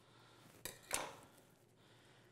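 Faint room tone with two soft knocks, about two-thirds of a second and a second in, the second the louder.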